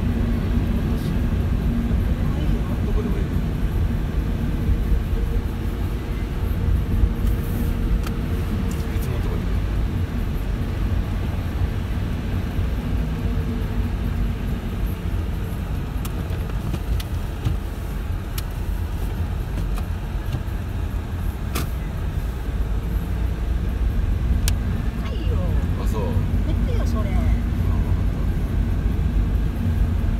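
Inside a moving car on a wet, slushy road: a steady low rumble of tyres and engine, with scattered sharp ticks.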